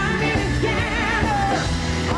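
Live pop-rock band playing with a female lead vocal, which holds a note with vibrato through the middle, over electric guitar, bass, keyboards and drums. The sound is a medium-quality VHS recording.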